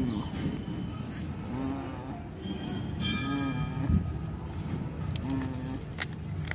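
A metal bell ringing, with a bright fresh strike about three seconds in, over faint background voices.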